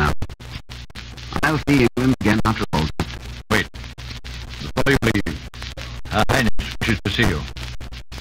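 Old radio-drama recording: voices and music, broken by many brief dropouts and a scratchy surface.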